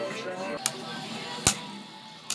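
Two sharp clacks, a bit under a second apart, of spinning Beyblade tops striking each other in a plastic stadium, over faint background music.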